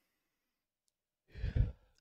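Silence for over a second, then a short breath from a man into a close microphone, just before he speaks.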